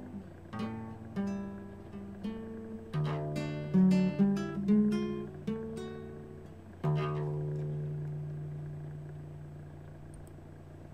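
Solo acoustic guitar picking the closing phrase of a song, then a final chord struck about seven seconds in and left to ring out and fade.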